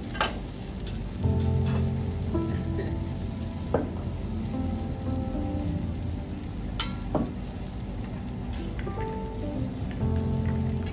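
Food sizzling on a teppanyaki flat-top griddle while metal spatulas scrape and turn it, with a few sharp clicks of the spatulas striking the iron plate.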